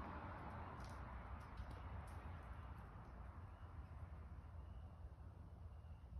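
Near silence: faint outdoor night background with a low steady rumble and a few soft clicks in the first couple of seconds.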